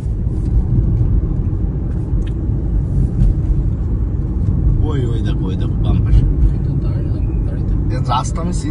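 Steady low rumble of a car driving, heard from inside the cabin, with a voice faintly audible about five seconds in.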